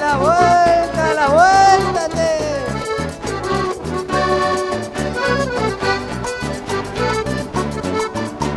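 Accordion-led Argentine country dance music with a steady bouncing bass beat. In the first couple of seconds a voice swoops up and down over the band in a shout.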